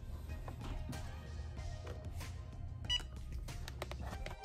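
Quiet background music, with a single short electronic beep about three seconds in from a Cricut EasyPress heat press as its 15-second press timer starts.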